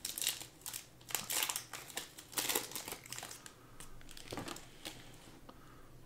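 Foil wrapper of a Panini Prizm basketball trading-card pack being torn open and crinkled by hand. A run of crinkling bursts over the first three seconds or so gives way to softer rustling as the cards are slid out.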